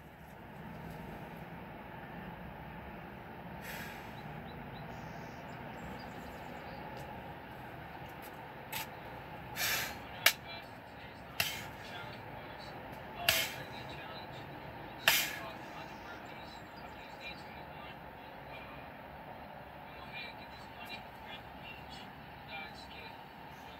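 A man working through a six-pump burpee: a steady background hush, broken between about nine and fifteen seconds in by six short, sharp sounds of hard breaths and impacts against the ground.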